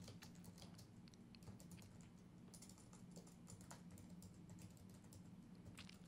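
Faint typing on a computer keyboard: scattered, irregular key clicks.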